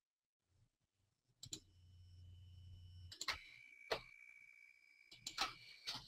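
Faint computer mouse clicks, about four spread across a near-silent room, with a faint steady high tone in the second half.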